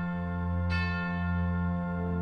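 Organ score holding sustained chords, with a bell-like chime struck about two-thirds of a second in and ringing on over the chord.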